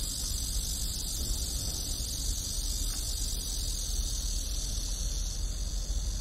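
Steady, high-pitched chorus of insects with a low rumble underneath.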